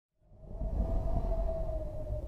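Podcast intro sound effect: a low rumble with a single steady held tone over it, fading in after a moment of silence.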